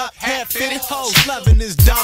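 Hip hop track: rapped vocals over a beat with a deep kick drum.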